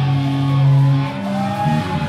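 Distorted electric guitar held as a sustained droning chord without drums, the pitch stepping to a new note about a second in and again near the end.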